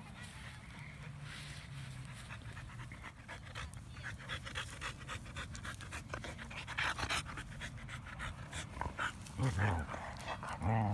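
Dogs panting close to the microphone, quick and rhythmic, with a louder low sound from a dog near the end.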